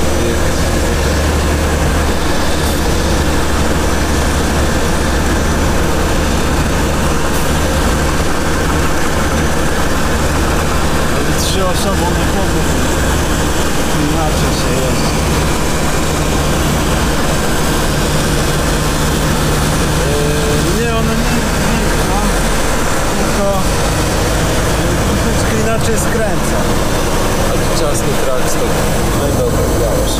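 Semi-truck's diesel engine running, heard from inside the cab as the truck moves slowly: a steady low drone.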